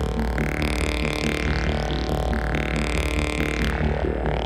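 Modular synthesizer patch with Moog DFAM and Mother-32 playing electronic music: a fast pulsing bass rhythm under steady droning tones, with a brighter upper layer that cuts in and out every second or two and a few sweeping glides.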